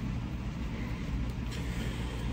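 Steady low hum with a faint even hiss: room background noise.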